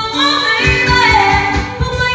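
A female voice singing karaoke into a microphone, over a backing track with a steady beat.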